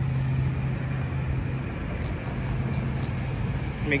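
A pigfish grunting while held out of the water: a low, steady drone that fades about two seconds in and comes back near the end.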